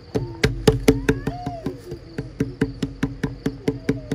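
A rapid, even series of sharp clicks or taps, about five a second, starting a moment in, over a low steady tone.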